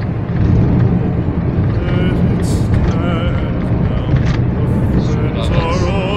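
Steady low rumble of a car driving, heard from inside the cabin, with music and a singer's voice playing quietly under it and coming back clearer near the end.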